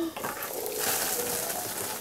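Glittery body spray hissing out in one continuous spray of a little over a second, after a short click near the start.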